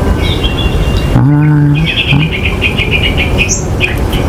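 A bird trilling: a rapid run of high chirps, about ten a second, lasting about a second and a half, over a steady low rumble. A short low hum sounds just before the trill.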